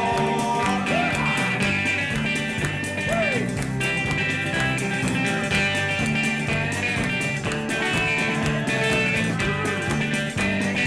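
Live band playing an upbeat dance tune, led by an electric guitar over a steady drum beat, with a few notes bending in pitch.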